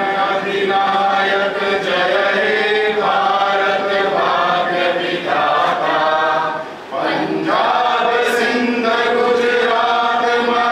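A group of people singing a national anthem together, with a short pause between phrases about seven seconds in.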